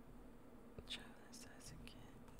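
Near silence: room tone, with a few faint, brief breathy mouth sounds close to a microphone.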